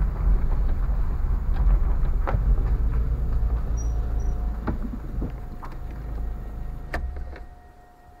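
Low rumble of a car rolling slowly over an uneven unpaved yard, heard from inside the cabin, with scattered knocks and clicks. It fades away near the end as the car comes to a stop, and a faint steady high tone becomes audible.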